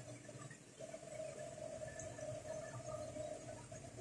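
Quiet room tone with a faint steady hum.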